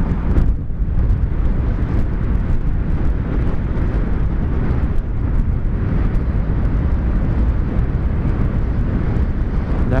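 Yamaha MT-03 motorcycle riding at road speed: a steady rush of wind over the microphone with the engine running underneath.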